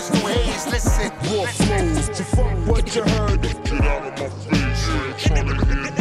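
Hip hop track: a rapper's voice over a beat with deep bass.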